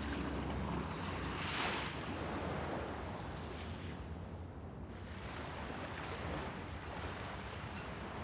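Small waves washing onto a sandy beach, with wind: a steady shoreline ambience, swelling briefly about two seconds in.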